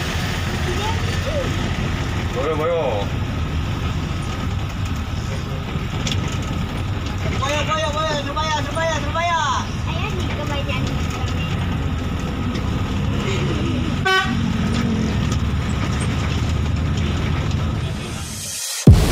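Steady low rumble of an intercity bus's engine and road noise, heard from inside the cabin while it drives. Brief wavering pitched sounds come in about three seconds in and again around eight to nine seconds, with a short knock near the end.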